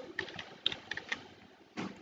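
Computer keyboard keys clicking: a handful of scattered, separate keystrokes, with one somewhat louder click near the end.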